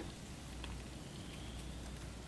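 Quiet outdoor background: a faint even hiss over a steady low rumble, with no distinct sound event.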